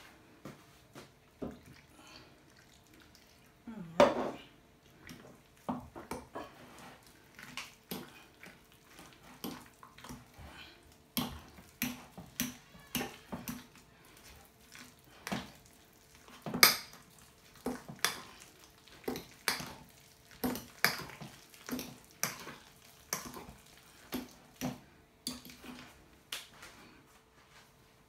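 A metal utensil knocking, clinking and scraping against a glass bowl as mashed potatoes are mixed with added milk, in irregular knocks about one or two a second. Two knocks are louder than the rest, a few seconds in and again past the middle.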